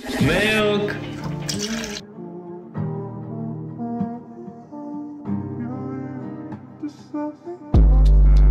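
Background music: a slow line of steady held notes after a brief sweeping sound at the start, then a sudden loud deep bass tone near the end.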